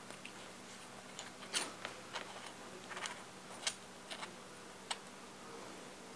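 Faint, irregular clicks and light scrapes of two aluminum test pieces being handled and turned together by hand as an M27×0.5 threaded watch back is tried in its test case.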